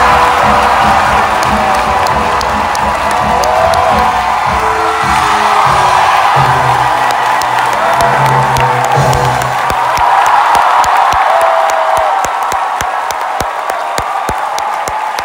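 Theatre audience cheering, whooping and applauding at the end of a Broadway show number, recorded from within the audience. The pit orchestra's closing chords sound under the cheering until about nine seconds in, after which mostly sharp clapping remains.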